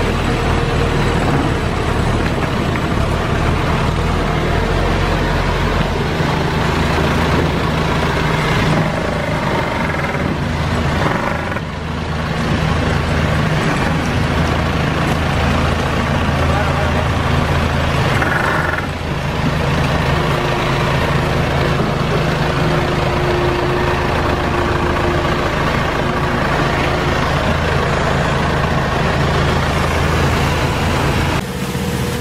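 A farm machine's engine runs steadily at a constant speed, with a low hum throughout; it drives the machinery of an olive harvest, a loader carrying the olive hopper. The level dips briefly twice.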